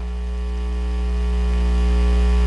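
Low electrical hum from the sound system, a steady drone with a buzzy edge that grows steadily louder during the pause in speech.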